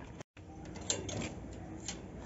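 Handling noise from a phone camera being moved: two soft clicks about a second apart over faint outdoor background, after a brief dropout just after the start.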